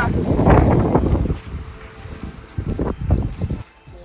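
Wind buffeting the microphone, heavy for the first second or so, then easing to a quieter rush with a few short knocks about three seconds in.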